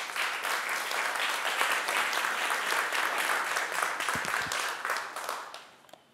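A small audience applauding, steady clapping that tapers off and stops near the end.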